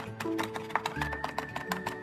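A cleaver chops rapidly on a wooden cutting board, about six or seven strokes a second, mincing soaked dried shrimp. Background guitar music plays under the chopping.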